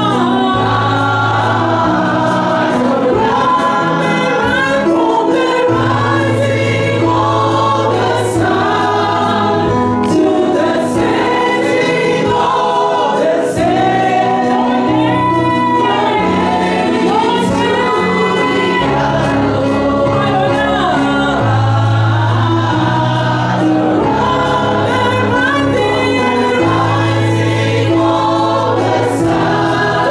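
Live gospel worship singing: a woman's voice into a microphone leads the song over a Yamaha PSR-SX600 arranger keyboard, which plays sustained chords with held bass notes that change every second or two.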